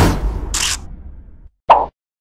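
Animated end-card sound effects: a sudden hit with a low rumble that fades over about a second and a half, a brief high swish in the middle, then a short sharp pop near the end, the loudest sound.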